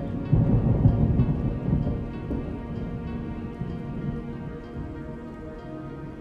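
A low rumble of thunder with rain, loudest in the first two seconds and then fading, over soft, sustained ambient music.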